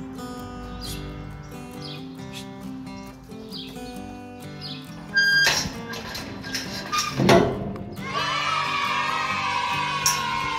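Background music with steady held notes. A sharp ringing clang comes about five seconds in, and a louder wavering pitched sound fills the last two seconds.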